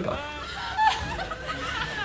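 Scattered chuckling and light laughter from a studio audience, quieter than the conversation around it.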